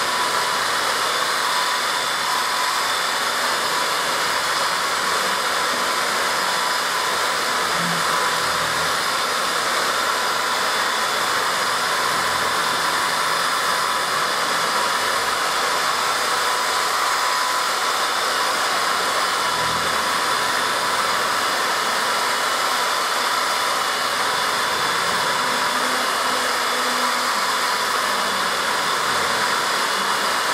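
Two handheld electric car polishers with foam pads running on a car's painted hood, polishing the paint: a constant motor whine with a steady high tone.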